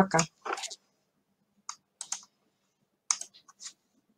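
The tail of a woman's goodbye, then a few scattered computer clicks in near-quiet: one just before two seconds in, a couple around two seconds, and a quick run of small clicks about three seconds in.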